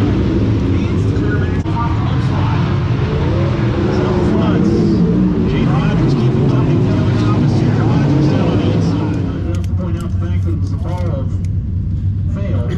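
Race car engines running on the dirt track, heard as a dense low drone with wavering pitch, mixed with voices. About nine and a half seconds in, it drops away to a quieter indoor setting.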